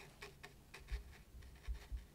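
Faint, irregular light ticks and taps of a paintbrush dabbing paint onto watercolour paper, with a couple of soft low knocks.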